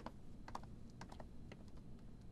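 Footsteps of hard-soled shoes clicking on a polished stone floor as people walk, about two steps a second.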